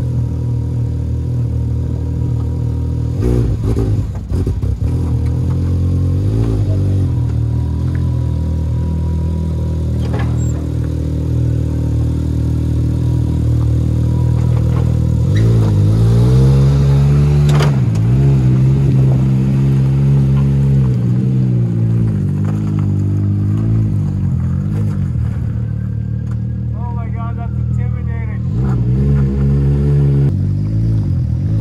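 Can-Am Maverick X3's turbocharged three-cylinder engine running at idle, then revving up and down in several short pushes about halfway through as the side-by-side backs down off a trailer, with another rev near the end.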